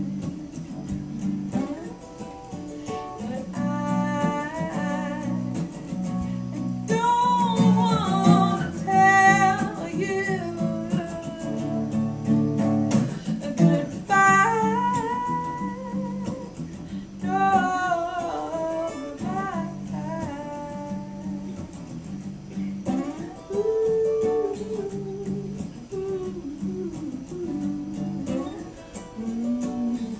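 Live acoustic folk song: an acoustic guitar played under a woman and a man singing together.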